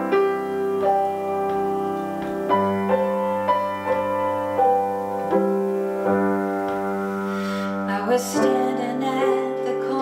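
Grand piano playing a slow accompaniment: notes and chords struck every half-second to a second and left ringing. About eight seconds in, a woman's voice begins singing over the piano.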